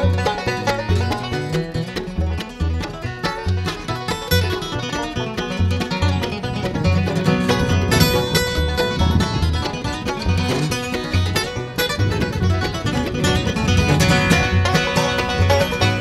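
Live bluegrass band playing an instrumental break without vocals: five-string banjo, acoustic guitar and mandolin over an upright bass keeping a steady beat of about two notes a second.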